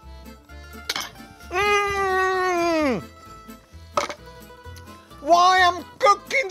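A man's long, wordless vocal sound of pleasure while tasting food: it holds one pitch for about a second and a half, then slides down. A shorter, wavering one follows near the end. Background music with a steady bass line plays throughout.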